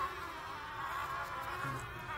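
Carpenter bees buzzing in flight around a bored-out fascia board, a steady buzz that wavers in pitch as they move.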